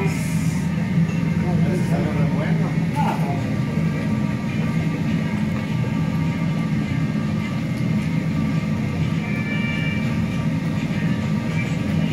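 A large cazo of carnitas cooking over a propane burner, giving a steady low rumble that does not change. Faint voices come through in the first few seconds.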